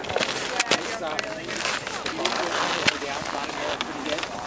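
Faint, indistinct voices in the background, over a steady hiss of outdoor noise broken by scattered sharp clicks and crackles.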